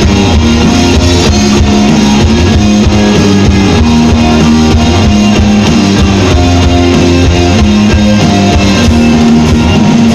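Live rock band playing loud and steady: electric guitars, bass guitar and drum kit together.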